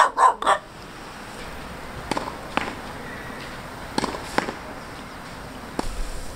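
Dog barking: after a loud short burst right at the start, pairs of brief, fainter barks come about two and four seconds in, and a single one near the end.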